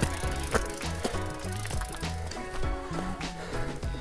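Background music with a stepping bass line over the rattle and knocks of a Devinci Wilson downhill mountain bike riding over rough dirt and rocks.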